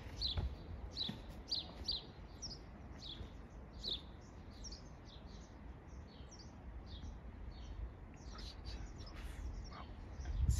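Small birds chirping over and over in short, falling chirps, several a second, thinning out in the middle and picking up again near the end, over a low steady rumble.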